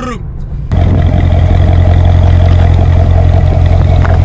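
A loud car engine sound at a steady pitch, starting abruptly under a second in.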